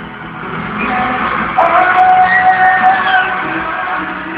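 Live pop ballad from the audience in an arena: a male singer with his band, swelling about halfway through into a loud, long held high note.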